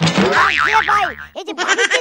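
A cartoon-style comedy sound effect: a wobbling, warbling tone that starts suddenly and lasts just over a second. A voice follows near the end.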